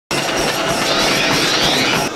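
A treadmill running under a sprinting runner, with his quick, rhythmic footfalls on the belt at about four a second over the machine's steady running noise.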